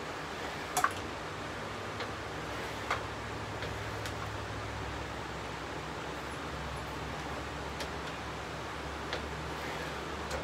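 A few sharp clicks and knocks from handling a Hercules sliding miter saw, its head slid along the rails and its table adjusted, with the saw switched off. A low steady hum runs underneath.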